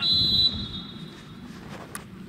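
Referee's whistle: one sharp, high blast, loudest for about half a second and then trailing away, signalling the free kick to be taken.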